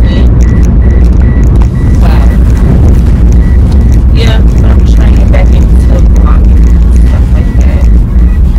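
Steady low rumble inside a car cabin, with a woman's voice talking at times over it.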